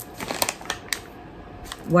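A soft plastic pack of wet wipes and a handbag being handled: a handful of sharp clicks and light rustling in the first second, then a quieter moment and one more click near the end.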